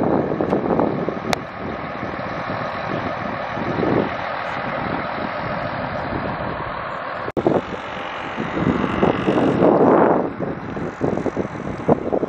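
Wind rushing over the microphone outdoors, a steady noise that dips briefly a little after the middle, with a woman talking at times.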